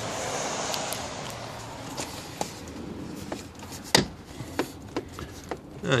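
Plastic interior trim on the car's windscreen pillar being pried apart and handled as a wire is tucked behind it: a rustling scrape for the first couple of seconds, then several light clicks and knocks, the sharpest about four seconds in.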